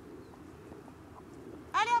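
A woman calling 'Allez' to her dog in a high voice whose pitch rises and falls, near the end; before it, only faint steady background noise.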